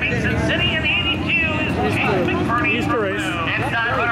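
A voice talking over the steady running of dirt-track race car engines.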